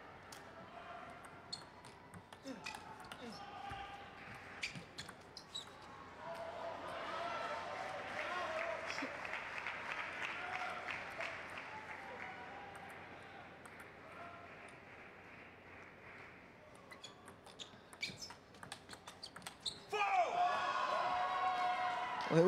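Table tennis ball clicking rapidly back and forth off bats and table in a rally, followed by crowd noise and calls in the hall. A second rally of quick ball strikes comes near the end, cut off by a sudden louder burst of voices.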